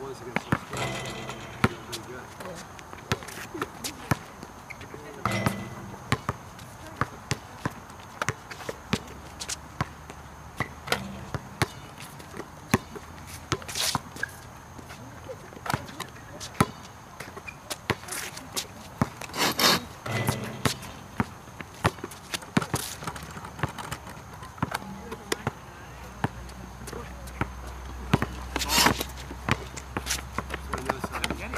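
A basketball bouncing on an outdoor asphalt court: many sharp, irregular bounces from dribbling and passing, with a few louder hits among them.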